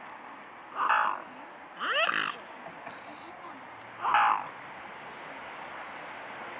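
Three short, harsh bird calls, about one, two and four seconds in, the second one rising in pitch.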